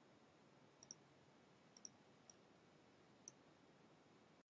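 Near silence with a few faint computer mouse clicks, some in quick pairs, as tree items are dragged and dropped.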